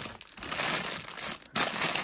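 Clear plastic bags holding loose action figures crinkling and rustling as a hand sorts through them in a cardboard box, with a brief pause about one and a half seconds in.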